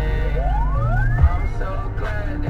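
Hip-hop track with heavy steady bass, carrying a single siren-like glide that rises steadily in pitch over about a second.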